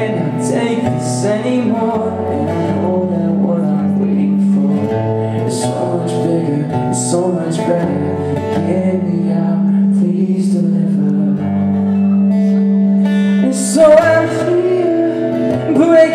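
Live music played over a club PA: a man singing with an acoustic guitar, with held notes sustained underneath.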